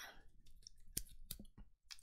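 A few faint, short clicks, about four, starting about a second in, the kind made while working a computer to mark up lecture slides.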